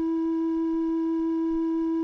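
A single steady electronic tone held at one pitch, with faint higher overtones, as from a synthesizer.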